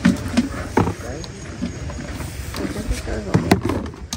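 Talking voices, with a couple of sharp knocks near the end as plastic basins, a colander and a bucket are handled.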